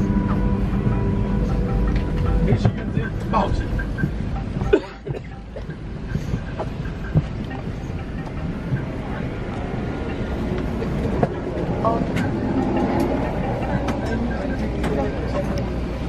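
Airbus A380 cabin during boarding: a steady low ventilation hum with passengers' background chatter and movement, dropping briefly about five seconds in.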